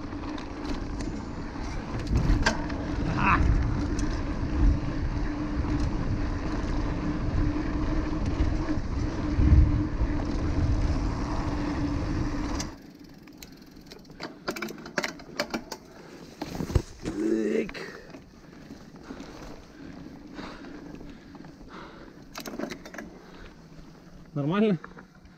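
Mountain-bike ride noise on a dirt road: wind buffeting the action-camera microphone over the rumble and steady hum of knobby tyres rolling on hard-packed ground. About halfway through the rumble drops away abruptly, leaving a quieter bed with scattered clicks and rattles from the bike.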